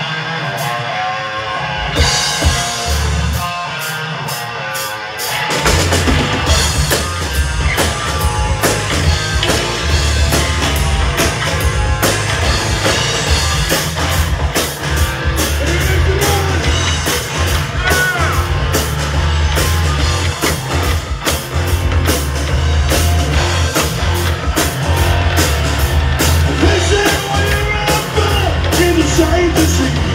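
Live rock band with electric guitar, bass and drum kit starting a song: the guitar opens nearly alone, the rest of the band comes in over the first few seconds, and the full band plays on from about five seconds in.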